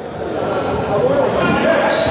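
Background voices chattering in a large, echoing sports hall, with the odd light knock of a table tennis ball.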